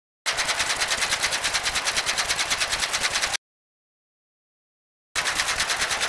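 Sound effect of rapid clicking, about ten clicks a second: a run of about three seconds, then silence, then a shorter run near the end.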